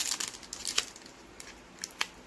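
Foil Pokémon booster-pack wrapper crinkling and crackling as it is handled and torn open at the crimped top, in a quick cluster of sharp crackles through the first second, then fainter.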